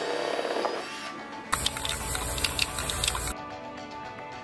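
Background music, with a cordless drill and step bit cutting through an aluminum doubler plate and wing skin for almost two seconds in the middle, a harsh hiss with rapid scratchy clicks that starts and stops abruptly.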